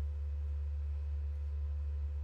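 Steady low electrical hum, like mains hum in the recording chain, with faint higher steady tones above it.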